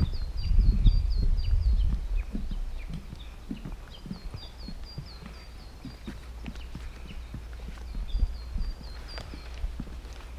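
Footsteps on a wooden boardwalk, a steady run of soft knocks, under a low rumble that is loudest in the first two seconds. A small bird sings three phrases of quick, short repeated notes that drop in pitch: one at the start, one about four seconds in and one near the end.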